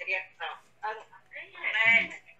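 A person's voice: a few short sounds, then a loud, wavering, drawn-out one near the end.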